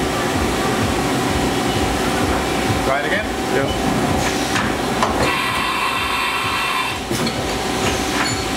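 Haas VF-2SS vertical machining centre doing a tool change at reduced speed because its door is open. Steady machine noise is broken by several clunks a few seconds in as the tool changer works. A high whine lasts about two seconds in the second half, and a last clunk follows as the new tool seats in the spindle.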